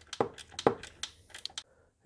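Socket ratchet clicking in a quick, uneven series of sharp clicks, about four or five a second, as the single screw holding the air filter housing is undone.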